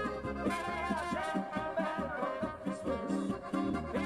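Alpine folk band music played live: accordion, trumpet and guitar in an upbeat tune over a steady beat.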